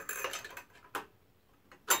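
Light clicks and clinks of small metal hardware, a carriage bolt and spacer being set into a wooden mounting plate by hand. There are a few quick clicks in the first second and a sharper click near the end.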